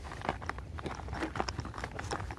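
Irregular small clicks and crackles of a handheld camera being handled as it swings, over a low steady hum.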